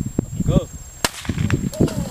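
A shouted "Go!", then a single sharp pop about a second in as the hand grenade is thrown: the grenade's lever flying off and its fuse firing, ahead of the blast.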